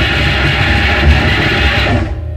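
Loud, dense wall of distorted noise from a noise-rock band recording, a harsh undifferentiated roar with no clear beat or melody. It cuts off sharply near the end, leaving a low hum.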